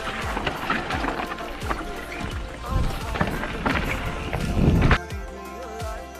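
Background music over mountain-bike trail noise: tyres and the bike rattling over rock, with wind on the camera microphone. The riding noise is loudest just before it stops at a cut about five seconds in, leaving the music alone.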